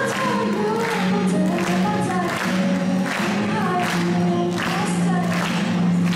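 A woman singing a melody with long held notes, accompanying herself on a strummed steel-string acoustic guitar, with a strum about every half second.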